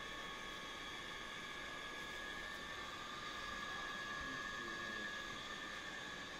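Faint steady background hiss with a constant high-pitched hum running through it; nothing else happens.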